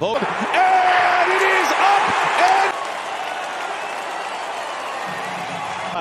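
Ballpark crowd cheering a game-tying two-run home run, loudest with shouts over the cheer for the first two and a half seconds, then settling to a steady, softer crowd noise.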